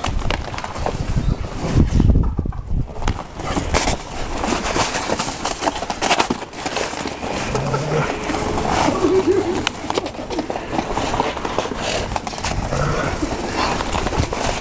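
Two Hungarian Vizslas in dog boots running and play-wrestling on snow: a quick, uneven patter of booted footfalls that sound like horses.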